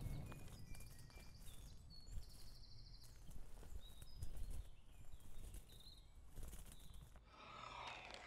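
Quiet outdoor ambience: scattered short, high bird chirps over a faint low rumble, with a brief rustle near the end.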